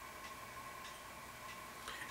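Quiet room tone with a few faint ticks and a faint steady hum.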